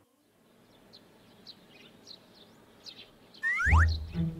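Small birds chirping faintly and repeatedly in a cartoon's background. Near the end a quick falling whistle sound effect sweeps down in pitch, and music comes in.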